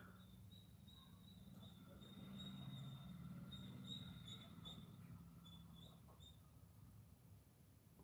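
Near silence: room tone with a faint low hum and a faint, high, wavering chirping tone that breaks up and stops about six seconds in.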